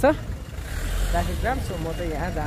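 Street traffic: a low rumble of car engines, with people talking over it in the second half.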